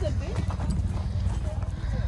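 Footsteps on a gravel path with faint chatter from a group of people, over a steady low rumble.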